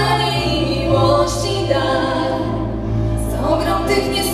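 Live vocal group singing in harmony, women's voices leading on microphones, over a held low bass accompaniment that shifts to a new note about a second in.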